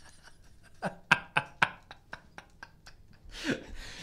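Two men laughing quietly, a few short breathy bursts in the first two seconds and a breath near the end.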